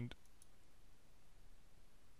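A single computer mouse click just after the start, followed by a low, steady room hiss.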